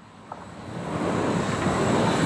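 Rumble of a moving train, fading in over the first second and then steady.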